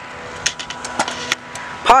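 Stunt scooter wheels rolling over concrete, with a few sharp clicks and knocks from the scooter between about half a second and a second and a half in.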